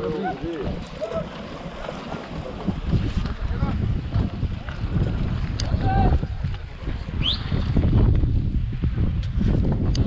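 Wind buffeting the camera microphone: a low, uneven rumble that grows stronger after the first few seconds. Faint voices come through in the background, and a short rising whistle is heard past the middle.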